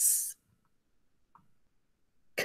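A woman voicing a short, high hissing "sss" right at the start, the letter sound of a phonogram being given aloud. Near silence follows, with one faint tick about a second and a half in.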